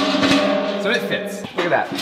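Steel gas cylinders knocking against a metal cylinder cart, one struck cylinder ringing on with a few steady tones that fade over about two seconds, among further clanks.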